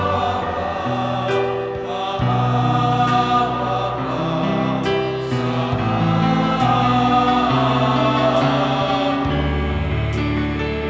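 A church choir singing a hymn over instrumental accompaniment with held bass notes that change every second or so. A light, sharp percussion tap falls about every two seconds.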